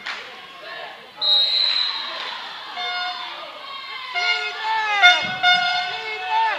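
Referee's whistle blown in a sports hall about a second in, a single held blast that fades out. It is followed by a run of short squeaks from court shoes on the hall floor, some bending downward in pitch, echoing in the hall.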